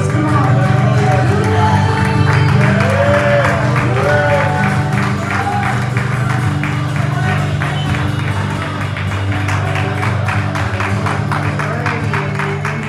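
Live church worship band playing: steady held low chords with a voice gliding over them in the first half, and from about halfway a run of quick sharp taps over the held chords.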